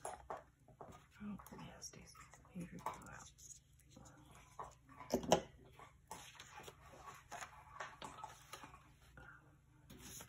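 A person's voice murmuring indistinctly, with light handling sounds of paper being pressed and moved on a journal page; one louder, sharper sound about five seconds in.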